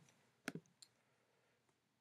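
Near silence with one short, sharp click about half a second in and a much fainter tick just after it.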